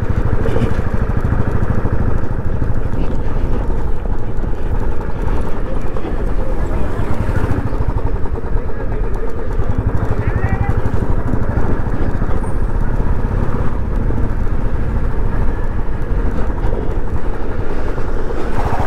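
Royal Enfield single-cylinder motorcycle engine running steadily at low speed, its even exhaust beat picked up by a helmet-mounted camera.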